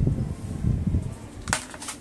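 Close handling noise: fingers and the rubbery headphone cable and plug rubbing near the microphone, with a low rumble, then a sharp plastic clack and a few smaller clicks about one and a half seconds in as the headphones are set down on a plastic stool.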